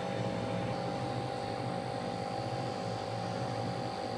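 A steady electrical hum, even in level, with a few constant tones and no other events.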